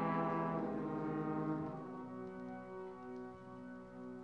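Opera orchestra with its brass holding a loud sustained chord that fades. About two seconds in it gives way to a quieter held chord.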